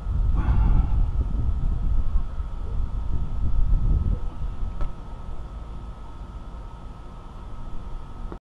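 Low, irregular outdoor rumble, strongest in the first half and then easing off, with a faint steady high tone underneath and one faint click about five seconds in.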